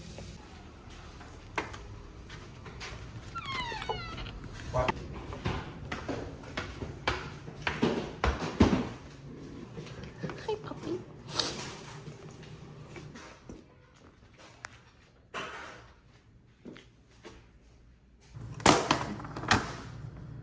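Kitchen handling noises: scattered light knocks and clicks on the counter, with a brief high whine about three and a half seconds in and a run of louder knocks near the end.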